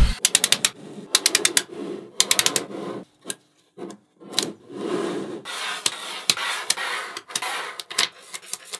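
Small magnetic balls clicking together in quick rattling runs as strips of them snap onto one another, alternating with stretches of gritty rubbing as the strips are slid across the tabletop.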